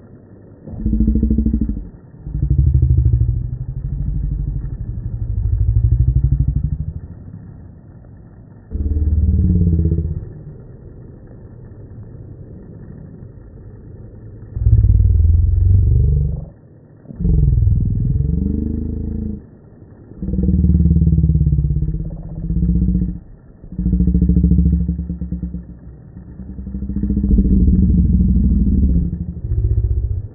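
Slowed-down cockpit audio: voices drawn out into deep, low groans with sliding pitch, in separate bursts of one to three seconds with short gaps between them.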